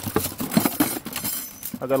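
Bent steel wire ICF clips clinking and jangling against each other as a handful is lifted out of a cardboard box by their short legs, a quick run of light metallic clicks.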